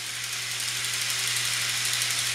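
Many motorized Thomas toy trains running together on plastic track: a steady whirring hiss with a low hum underneath, slowly growing louder.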